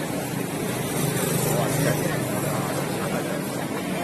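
People talking on a city street over a steady low hum of vehicle traffic. The hum swells briefly about a second in.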